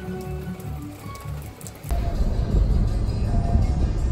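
Rain falling on a wet road. About two seconds in, it changes suddenly to a louder, steady low rumble.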